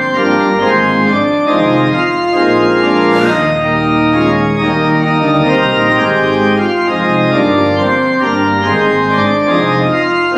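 Church organ playing a loud, steady passage of full sustained chords over a moving pedal bass.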